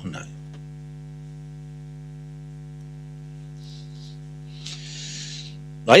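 Steady electrical mains hum with a ladder of evenly spaced overtones on the audio line. Two faint soft hisses come about two-thirds of the way through and near the end.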